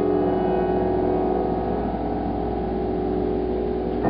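Grand piano holding a sustained blues chord with the pedal down, its notes ringing and slowly dying away over a low rumble of bass strings, before new notes come in at the very end.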